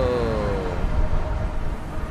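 Sci-fi portal sound effect: a loud, dense rumbling whoosh. A drawn-out, effect-processed "whoa" falls in pitch and fades out within the first second.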